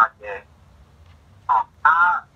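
Speech over a telephone-quality line: short spoken bits at the start, a pause of about a second, then talk resumes near the end.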